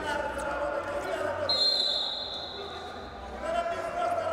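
Men's voices shouting across a large, echoing wrestling hall during a bout, with the wrestlers' shoes thudding on the mat. A single high, steady tone sounds for about a second and a half in the middle.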